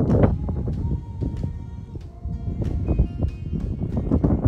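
Music with a few held notes, the first long one about a second in, under low wind rumble on the microphone.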